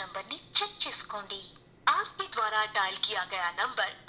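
A voice from a phone call played through the built-in speaker of a Noise ColorFit Icon Buzz smartwatch. It sounds thin and telephone-like, yet crisp and clear, and comes in two stretches of speech with a short pause.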